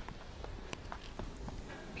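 Footsteps in snow with handling noise from a hand-held phone: a low hiss and a few scattered soft clicks and crunches, one sharper click a little under a second in.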